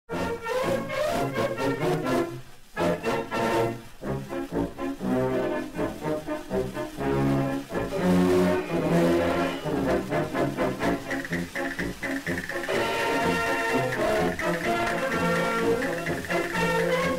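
A brass-led band playing the opening of a pasodoble: short rhythmic chords, a brief break a couple of seconds in, then a fuller, brighter passage about three-quarters of the way through.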